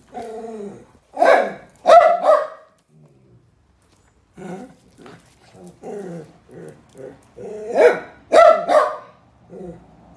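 Dogs barking in short, sharp barks: three loud barks in the first few seconds, then a run of quieter, shorter barks, and three more loud barks near the end.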